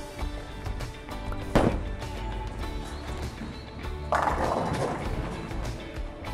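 Background music, over which bowling pins crash sharply about a second and a half in as the ball hits them for a strike. A second, longer clatter follows about four seconds in and fades away.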